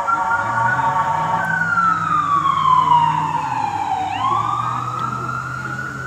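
An emergency vehicle's wailing siren: the tone holds high, slides slowly down over a couple of seconds, then sweeps back up about four seconds in. A low steady hum runs underneath.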